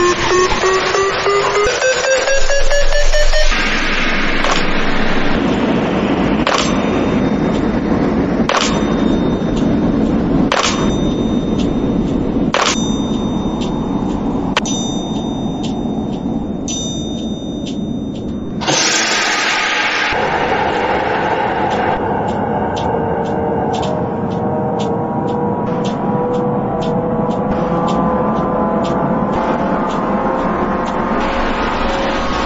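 Reversed sound effects from a trap production pack, played one after another. First a pitched tone glides upward, then comes a noisy wash with a sharp hit about every two seconds. About two-thirds through there is a sudden burst of noise, and near the end a held tone sounds under quick ticks.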